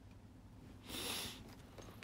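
A single short sniff, a breathy hiss lasting about half a second, about a second in, over faint room tone.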